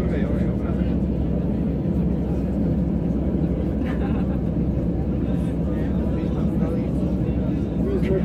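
Steady low rumble of an airliner's jet engines and airflow heard from inside the passenger cabin while the plane taxis.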